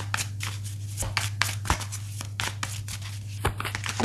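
A deck of fortune-telling cards being shuffled by hand: a fast, irregular run of crisp card clicks and flutters, over a steady low hum.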